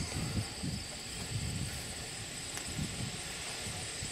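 Outdoor ambience: low, uneven wind noise on the microphone under a steady, faint, high-pitched insect chorus, typical of crickets.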